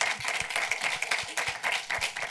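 Audience applauding, a continuous patter of clapping.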